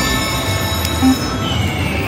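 Electronic chimes from the Buffalo Gold video slot over the ringing of other slot machines: several steady high tones overlap, a short low beep sounds about a second in, and a tone falls in pitch near the end.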